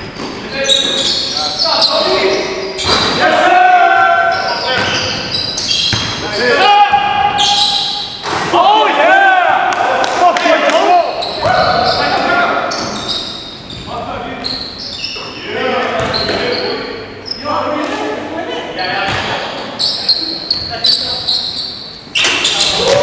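Basketball dribbling and bouncing on a hardwood gym floor, with players' voices calling out, echoing in a large gym hall.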